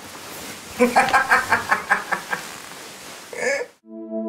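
A woman laughing: a quick run of giggles about five a second, then a short voiced sound. It cuts off abruptly near the end as soft ambient music with sustained synthesizer tones begins.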